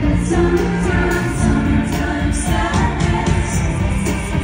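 Amplified live music with singing from a festival stage over a heavy, steady bass, heard from out in the open crowd.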